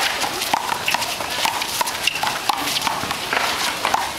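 Irregular sharp smacks and taps of a one-wall handball rally: the rubber ball struck by hand and bouncing off the wall and court, mixed with sneakers scuffing and stepping on asphalt.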